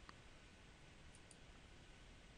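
Near silence: faint room hiss, with a couple of faint computer mouse clicks a little over a second in.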